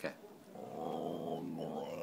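Whippet "talking": a drawn-out, wavering vocalization that starts about half a second in and keeps going, the hungry dog begging for food.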